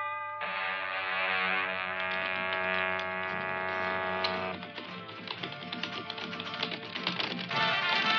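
Western film score: a sustained chord for the first four seconds or so, then a busier rhythmic stretch with fast ticking, and fuller, louder music coming in near the end.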